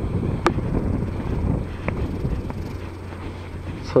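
Wind rumbling on a handheld camera's microphone, fading over a few seconds, with a few sharp clicks. The loudest click comes about half a second in.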